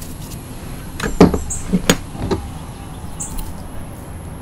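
Gloved hands working a pan of powdered gym chalk, with four dull thumps between about one and two and a half seconds in, the first the loudest.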